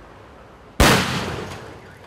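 A 10-centimetre firecracker (petarda) going off with a single sharp bang about a second in, its echo fading over the following second, over a steady faint outdoor hiss.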